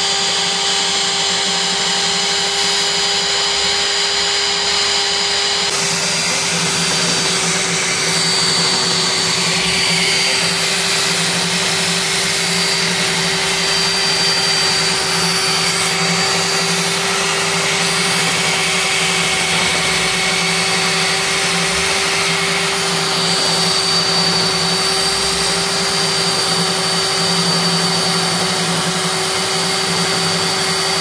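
Electric diamond core drill running steadily with a water-cooled core bit, cutting a core sample out of a concrete pier. A constant motor hum and high whine, whose upper edge shifts slightly about six seconds in.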